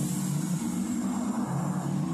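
A loud hiss that fades slowly, over low droning tones that shift in pitch every half second or so.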